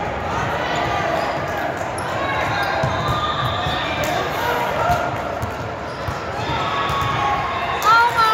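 Volleyball rally on a hardwood court: sneakers squeak against the floor and the ball is struck now and then, with voices of players and spectators. A sharp pair of shoe squeaks comes at the very end.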